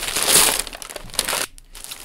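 Gift wrapping paper being ripped and crumpled as a present is unwrapped: a loud rip in the first half second, then shorter crinkling rustles.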